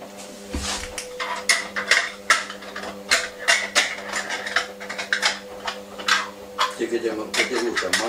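Small glass jars clinking and knocking against each other and the sink as they are handled and washed, in quick irregular clatters, over a steady low hum.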